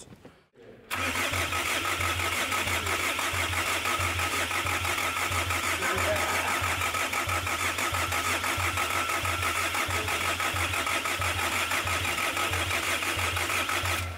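Starter cranking the 2.5-litre turbodiesel of a 2008 Kia Sorento on a first start attempt, starting about a second in and cutting off near the end, with an even chug of compression strokes; the engine does not fire. The mechanic judges by the cranking sound that one cylinder is a little short of compression.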